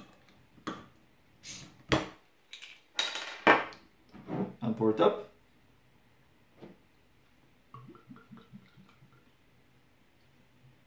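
A crown cap being levered off a glass beer bottle with a metal bottle opener: a few clicks and knocks, a short hiss of escaping gas with a sharp pop about three and a half seconds in, then more clinks. Near the end, beer begins pouring into a glass mug with a faint, quick gurgle.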